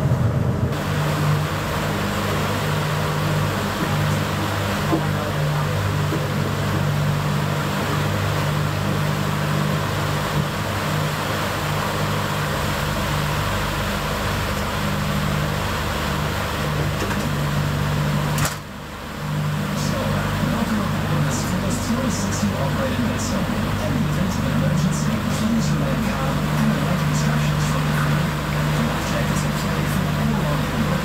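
A passenger ferry's engines running with a steady low drone, heard on board, under a constant wash of wind and water noise. There is a brief drop in level about eighteen seconds in and light ticking near the end.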